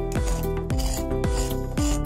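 Background music with a steady beat: held melody notes over deep bass notes that slide downward, with regular hissy strokes on the beat.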